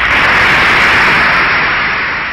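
Loud, steady hiss of noise like static, setting in suddenly as the speech stops.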